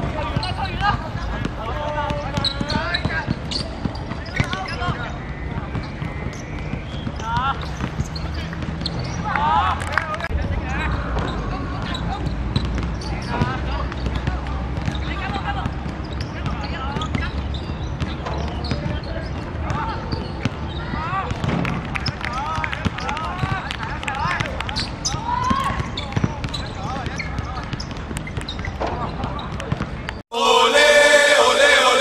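Live sound of a youth football match: players calling and shouting to each other on the pitch, with the knocks of the ball being kicked over a steady low rumble.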